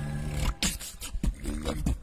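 Beatboxing by a single a cappella performer: a quick run of sharp clicks and snare-like mouth hits with short low growling bass sounds, after a held low sung note ends about half a second in.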